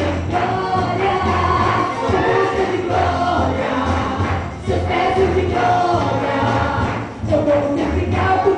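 A woman singing a Pentecostal gospel song into a microphone over amplified backing music with a steady bass, pausing briefly between phrases about four and a half and seven seconds in.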